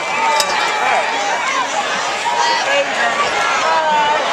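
Spectators shouting and calling out over one another, many voices at once at a steady level.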